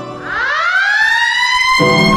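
A siren-like wail: one pitched tone that climbs steeply over about a second, then holds steady. Low music comes in near the end.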